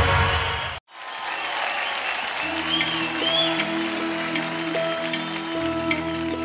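The tail of an electronic theme jingle, which cuts off abruptly under a second in; then audience applause, with the soft sustained instrumental notes of a slow song's intro starting about two seconds later.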